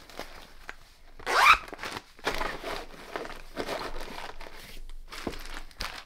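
Plastic powder-drink packets and a mesh zip pouch crinkling and rustling as they are handled, with a louder, brief sweeping rustle about a second and a half in and a sharp click near the end.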